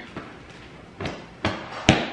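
A few short thumps, with the sharpest and loudest just before the end, as new bed pillows and their packaging are handled and slapped flat.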